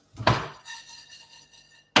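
Kitchenware knocked together: a knock shortly after the start that rings on with several clear tones for over a second, then a second sharp clack near the end.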